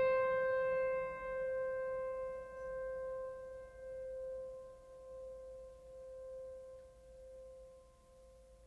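Background music: a single piano note, struck just before and left ringing, fading slowly over about eight seconds with a gentle wavering swell.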